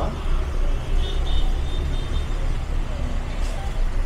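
Steady low rumble of background noise, like road traffic, with a faint brief high tone about a second in.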